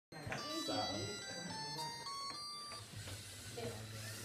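A short tune of electronic beeps, one pitch after another, from a LEGO Mindstorms robot's built-in speaker, ending just before the three-second mark. Low voices run underneath.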